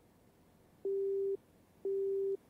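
Telephone busy tone heard from a mobile phone held to the ear: a steady low single-pitched beep, about half a second long, repeating about once a second and starting about a second in. It signals that the call is not getting through.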